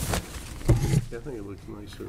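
Indistinct, quiet speech, with a short louder utterance or bump about two-thirds of a second in, over a steady low electrical hum.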